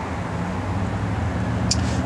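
A steady low vehicle rumble with even low hum, and a brief high hiss near the end.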